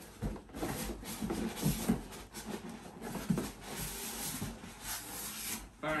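Large cardboard box being tipped and handled, with irregular rubbing and scraping of cardboard.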